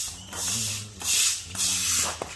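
Push-broom bristles scraping and dragging over a wet concrete floor in four rough bursts, about two a second, as a dog pulls on the broom head.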